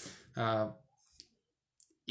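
A man's voice finishing a word and a short drawn-out syllable, then a pause holding two faint short clicks.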